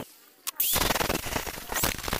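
Angle grinder with an abrasive cutting disc cutting into a steel pipe clamped in a bench vise, a loud, harsh, crackling grind. It comes in abruptly about half a second in, after a brief quiet gap.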